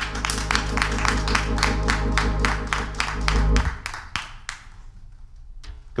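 Organ holding sustained chords while a congregation claps along in an even rhythm, about five claps a second; the organ stops a little over three and a half seconds in and the clapping dies out soon after.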